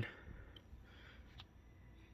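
Near silence with a faint key click a little past the middle: the power key of an HP Laptop 15 being pressed to switch it on for the first time.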